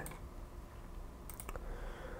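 A couple of faint computer mouse clicks about a second and a half in, as a block category is selected on screen.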